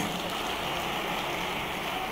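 A large crowd applauding, a dense, steady patter of many hands clapping.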